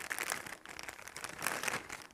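Clear cellophane bag crinkling and rustling in irregular crackles as hands rummage through the die-cut paper pieces inside it.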